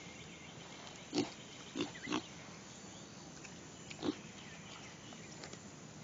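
Short animal grunts from animals at rough-and-tumble play, four of them: about a second in, two close together near two seconds, and one at about four seconds.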